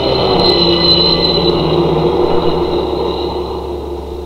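1960s police patrol car going by at speed: its engine and a steady high-pitched warning ring, fading slowly as the car draws away.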